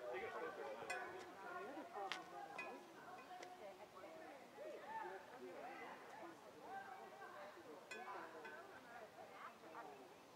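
Faint, indistinct conversation between people some distance from the microphone, with a few sharp clicks scattered through it.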